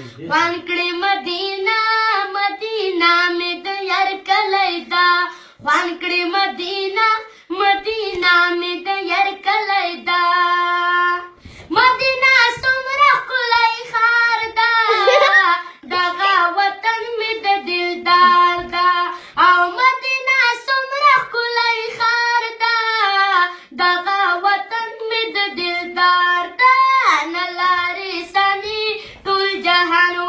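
A boy singing a Pashto naat unaccompanied: one high voice in a flowing melody with ornamented, wavering notes and long held notes, broken only by short breaths between phrases.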